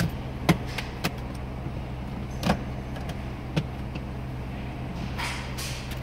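2015 Ford F-150's 3.5-litre V6 idling steadily, heard from inside the cab. Over it come a handful of sharp clicks from the steering-wheel buttons being pressed, and a brief rustle near the end.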